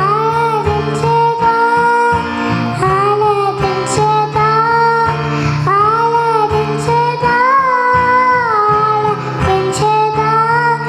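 A young girl singing a Telugu Christian worship song into a microphone, over instrumental accompaniment. The melody moves in held, gliding notes.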